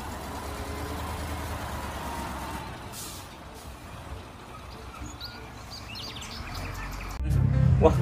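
Concrete mixer trucks driving on a dirt road: a steady low engine rumble with road noise.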